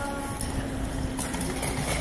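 Quick footsteps on a tiled subway platform, heard as a string of short irregular steps. A steady humming tone sounds with them and stops shortly before the end.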